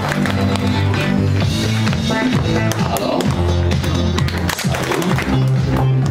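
Upbeat music with a bass line and a steady beat, with children clapping along.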